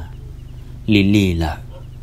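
A narrator's voice: a pause, then one drawn-out syllable with a wavering pitch about a second in, then another pause.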